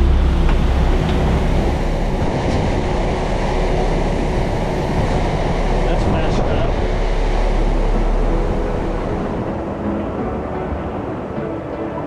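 Sportfishing boat under way at sea: a steady engine rumble mixed with rushing wake water and wind on the microphone, easing off over the last few seconds.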